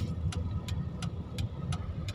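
A car's turn-signal indicator ticking steadily, about three ticks a second, over the low hum of the engine heard inside the cabin.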